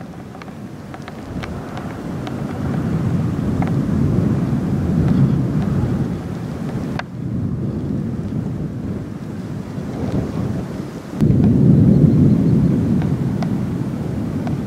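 Wind buffeting the microphone: a low, rumbling noise that swells and falls, drops briefly about halfway through, then comes back suddenly louder near the end.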